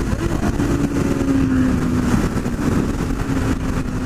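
Honda CB600F Hornet's inline-four engine running at highway speed: a steady hum that drops a little in pitch about two seconds in as the bike eases off. Heavy wind noise on the microphone.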